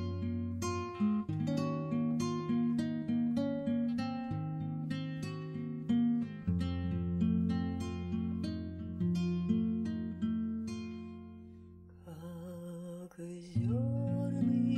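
Instrumental acoustic guitar intro: plucked notes in an even rhythm over a low bass line. About twelve seconds in the picking drops away and a quieter, wavering held melody comes in, with the plucked notes returning at the end.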